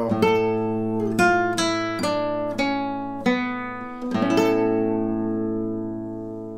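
Nylon-string classical guitar played fingerstyle and slowly, with a drawn-out final cadence in A minor: a series of plucked notes and chords, then a final A major chord (a Picardy third) struck about four seconds in that rings and slowly fades.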